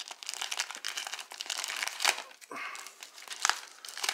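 Paper packaging crumpled and rustled by hand while a small mailed package is unwrapped, with irregular crackles and sharp clicks throughout.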